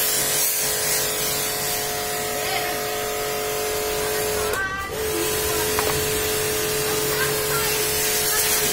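Electric pressure washer running with a steady whine, its water jet hissing against the car body. A little past the middle the motor tone cuts out for about half a second, then resumes.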